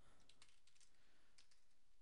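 Faint keystrokes on a computer keyboard: a quick, uneven series of taps as a word is typed.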